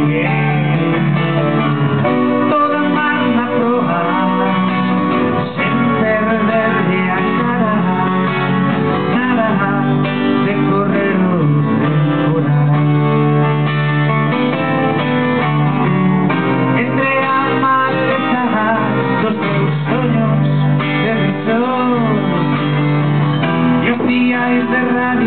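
A man singing a song live to his own acoustic guitar accompaniment.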